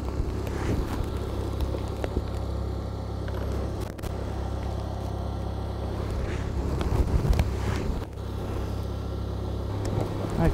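A steady low rumble of wind on the microphone, with gusty flickers and a few faint clicks, dipping briefly twice.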